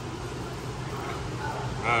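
Steady low background hum of a busy outdoor area, with no distinct event, and a man's brief 'uh' at the very end.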